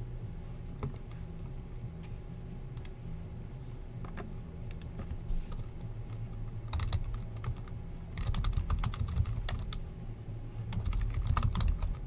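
Computer keyboard typing: scattered keystrokes and clicks that come in denser bursts in the second half, over a steady low hum.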